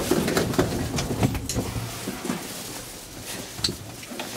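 Traction elevator car running, a low hum, with a quick run of clicks and knocks over the first couple of seconds and a few more near the end.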